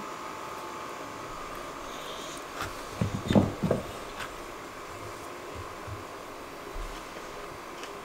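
Quiet room tone with a steady hum and a thin steady tone, broken about three seconds in by a brief cluster of short, soft sounds.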